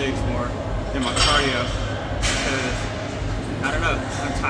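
Indistinct voices talking in a busy gym, with two short noisy bursts about one and two seconds in.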